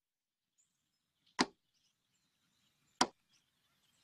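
Two short, sharp swoosh-like editing sound effects, about a second and a half apart, with near silence between them.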